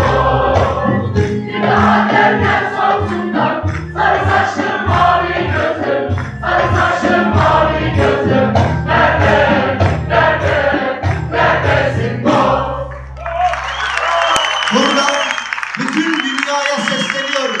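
Choir of women singing with a rhythmic accompaniment; the music stops about twelve and a half seconds in, and near the end a man's voice comes in over the microphone.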